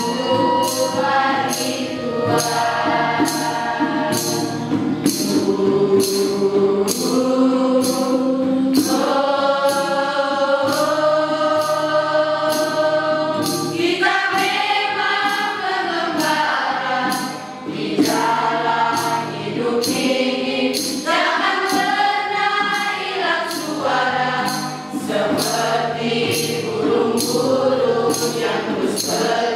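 Mixed teenage choir singing a slow song together in several voices, with acoustic guitar accompaniment. A light percussion beat ticks steadily, a little more than once a second.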